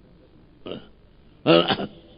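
A man's amplified voice in a pause of his speech: a faint short sound just over half a second in, then one short loud vocal syllable about one and a half seconds in.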